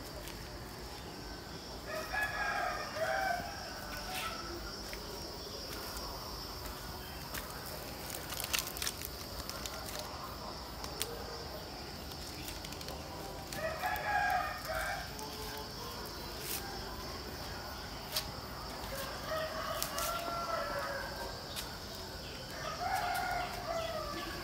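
A rooster crowing four times, once about two seconds in and three times in the second half, each crow lasting a second or two.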